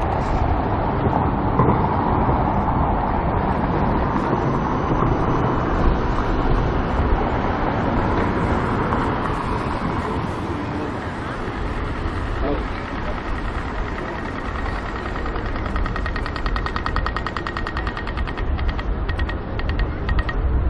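City street ambience: traffic running on wet roads, with passers-by talking. In the last few seconds a rapid, regular ticking comes in.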